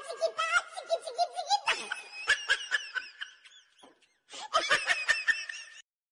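High-pitched laughter in quick bursts. It breaks off briefly about four seconds in, picks up again, and cuts off sharply near the end.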